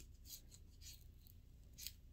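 Faint, short scratchy rubs of fingers working at the plastic cap of a candy foam bottle, about three in two seconds, as the cap is being worked loose.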